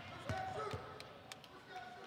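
Quiet basketball-court sound: scattered taps and thuds of a basketball on the hardwood floor, with a few short sneaker squeaks.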